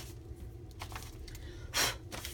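Soft rubbing of a hand over a paper journal page, brushing off excess powder that has been sprinkled on a sticky spot, with one short, louder rush of noise near the end.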